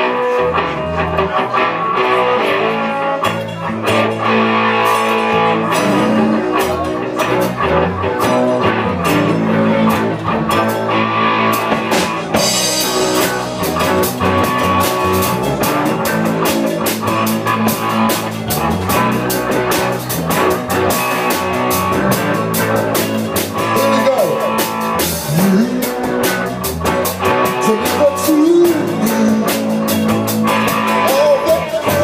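Live rock band playing at full volume: electric guitar, electric bass and drum kit, with a steady beat of drum hits throughout.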